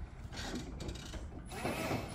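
Toyota GENEO-R electric stand-up reach truck working under its operator's controls: uneven mechanical clatter and whirring from its drive and mast, with a louder burst and a gliding whine near the end.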